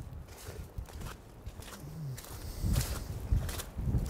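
Footsteps of a person walking on slushy, snow-patched asphalt: a string of soft steps at a walking pace.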